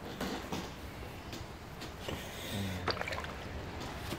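Faint stirring of powdered milk into liquid in a plastic bucket with a plastic scoop: light sloshing with a few soft clicks of the scoop.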